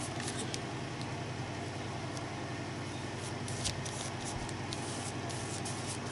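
Quiet room tone: a steady low hum with hiss, and a few faint light ticks.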